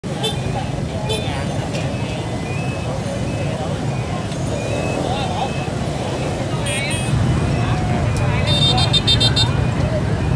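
Street traffic of motorbike and truck engines running under crowd chatter. A few brief high-pitched horn toots come through, and a rapid series of high pulses sounds a little before the end.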